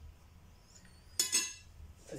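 A single sharp clink of kitchenware being handled, ringing briefly, a little over a second in.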